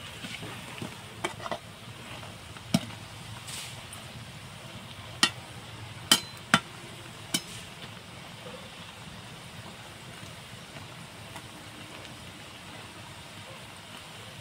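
Koftas deep-frying in hot oil in an aluminium kadai: a steady sizzle, while a perforated metal skimmer turning them knocks sharply against the pan several times, mostly between about three and seven seconds in.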